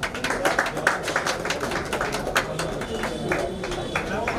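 Scattered hand clapping from a small crowd, irregular claps over indistinct chatter.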